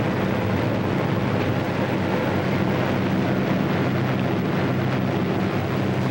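B-26 Marauder bomber's engines droning steadily in flight, a low even hum under a rushing wind-like hiss.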